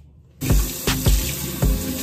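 Water running from a bathroom sink tap, starting about half a second in, under background music with a steady beat about twice a second.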